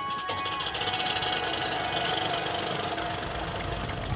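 A steady, fast mechanical rattle, with a held high tone that stops about half a second in.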